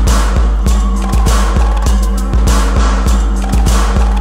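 Slow, dark techno track: a steady electronic beat over a deep sustained bassline, with noisy percussion hits on top.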